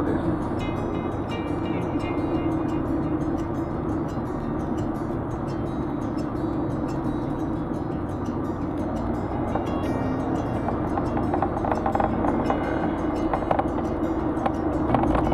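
Car driving, heard from inside the cabin: a steady mix of engine and tyre noise.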